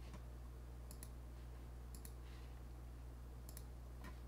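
Faint computer mouse clicks, about four in all, most of them a quick pair of ticks, over a steady low hum.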